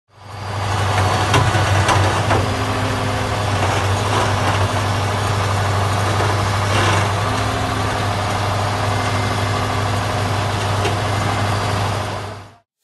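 Diesel engine of a wheeled log loader running steadily with a deep, even note, and a few sharp knocks in the first seven seconds as the grapple handles logs.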